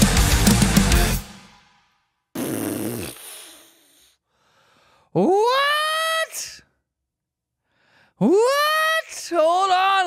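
The last bars of a heavy rock cover with pounding drums, cutting off about a second in. A short noisy burst follows, then a man lets out long, wordless high-pitched yells of excitement, each rising in pitch, the last breaking into a wavering wail near the end.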